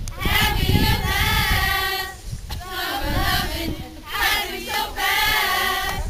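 A group of mostly female voices singing together like a choir, in three phrases with short breaks about two and four seconds in.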